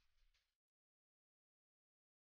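Near silence: a dead gap in the soundtrack just after the intro music ends.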